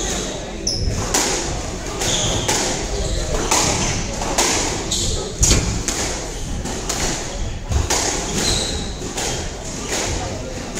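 A squash rally: the ball is struck by rackets and hits the court walls in sharp knocks at irregular intervals, echoing in the hall. There are brief high squeaks between the strikes.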